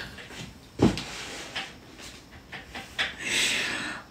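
Breathy, muffled laughter and panting from a woman laughing behind her hands, with a longer breathy stretch near the end.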